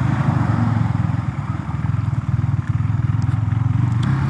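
KTM Duke 390's single-cylinder engine running under light throttle at low road speed, a steady rapid pulsing exhaust note.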